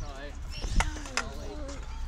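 High-pitched children's voices chattering, with two sharp knocks a little under half a second apart near the middle.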